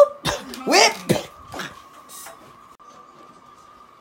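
A young man's short, rising vocal outbursts, like coughs or mock sobs, two of them within the first second, with a couple of sharp knocks among them. After that there is only a faint steady high tone.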